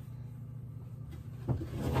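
A low steady room hum, then about one and a half seconds in a short knock with a brief rustle of handling.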